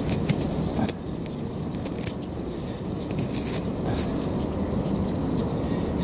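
Muddy fingers rubbing and scraping wet grit off a clay tobacco pipe bowl, a run of small irregular gritty clicks and scratches, over a steady low rumble.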